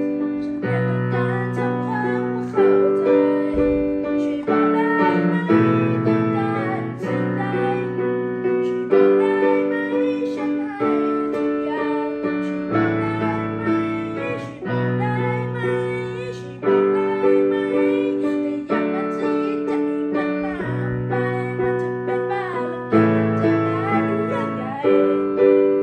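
A child singing while accompanying himself on a digital piano, the chords struck and changing about every two seconds.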